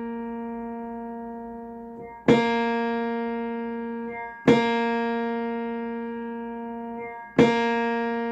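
Upright piano: a single note struck three times, each with a sharp attack and left to ring and slowly die away, while its string is being tuned with a tuning lever on the pin.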